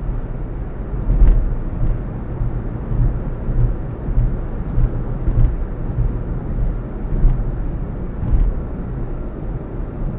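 Car driving along a highway heard from inside the cabin: a steady low road and engine rumble, with several short knocks and thumps from bumps in the road.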